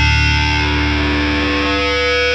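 Rock band playing: electric guitar chords held and ringing over a sustained bass, with new notes coming in near the end.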